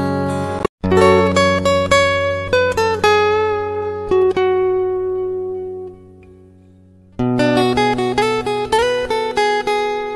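Background music: a plucked string instrument, likely guitar, playing a picked melody. It cuts out for an instant a little under a second in, and fades to a quiet lull around six seconds before the picking starts again about a second later.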